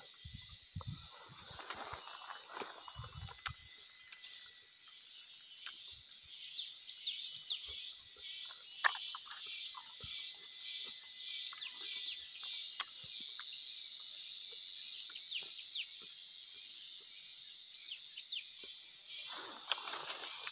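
Insects calling in tropical scrub: a steady, high-pitched drone throughout, joined for several seconds in the middle by a pulsing chirr about twice a second. Scattered light clicks and rustles of handling are heard over it.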